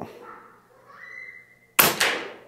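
A single shot from an Air Venturi Avenge-X .25 calibre PCP air rifle firing a 29-grain pellet near the end: a sudden sharp crack that dies away over about a second.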